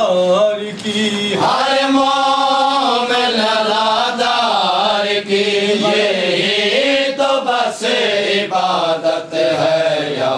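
Men's voices chanting a noha, a Shia lament, together and without instruments, in a continuous melodic line that rises and falls.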